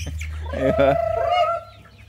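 Chickens calling around feed: a few short clucks, then one drawn-out, wavering call lasting about a second.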